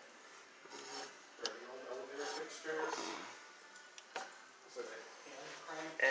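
Faint voices talking in a small room, with two sharp clicks, one about a second and a half in and another about four seconds in.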